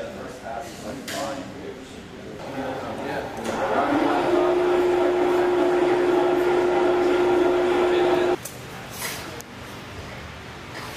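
Electric overhead hoist motor running with a steady tone. It starts about three and a half seconds in and cuts off suddenly about eight seconds in.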